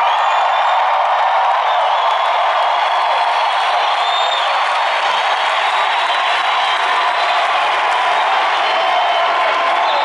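Large arena crowd cheering and applauding, a loud, steady roar of many voices and clapping.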